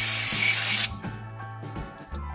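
Water spray from a hose hissing against an RV's side panel during a rinse, cutting off suddenly about a second in. Background music plays underneath.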